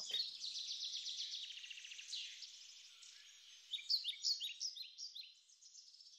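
Birds singing: a fast, high trill that fades over the first few seconds, then a run of short, high chirps that each slide downward, a little after the middle.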